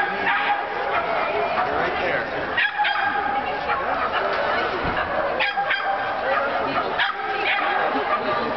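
A dog barking in short, sharp barks every couple of seconds, over a constant background of voices.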